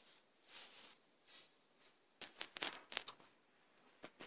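Faint handling noise: a couple of soft rustles, then a quick run of small clicks and taps between about two and three seconds in.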